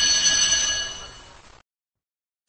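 A bell-like chime rings out with several steady overtones, fading away and ending about a second and a half in, followed by silence.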